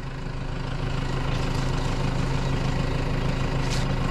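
New Holland 4040F vineyard tractor's diesel engine idling steadily close by.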